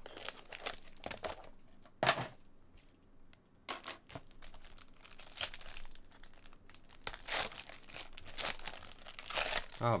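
Foil wrapper of a trading-card pack crinkling in irregular bursts as it is handled and torn open by hand.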